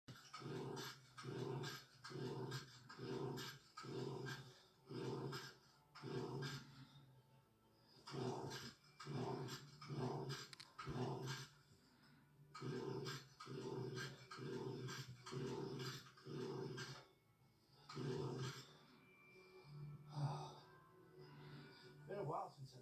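Rhythmic heavy breathing or panting close by, a little more than one breath a second, with a few short pauses and fainter near the end.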